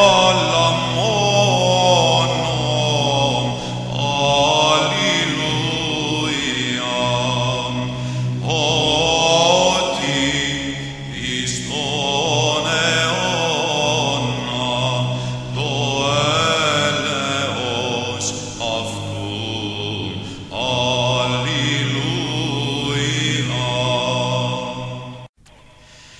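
Orthodox church chant: sung melodic phrases over a sustained low drone, with brief pauses between phrases.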